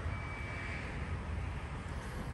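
Power liftgate of a 2021 Jeep Grand Cherokee L rising, a faint steady whir with a thin high tone during the first second.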